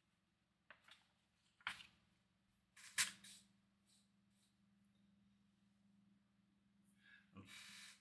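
Near silence: room tone of a voiceover recording, with two faint short clicks about two and three seconds in and a short intake of breath just before speech resumes.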